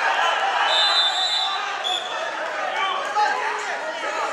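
Voices of coaches and spectators shouting in a large sports hall, with a short, steady, high whistle blast about a second in, as the referee stops the ground wrestling.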